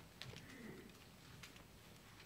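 Near silence: room tone with a few faint clicks and rustles, and a brief faint low falling sound about half a second in.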